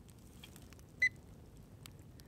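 Handheld infrared thermometer gun giving one short, high beep about a second in as it takes a temperature reading.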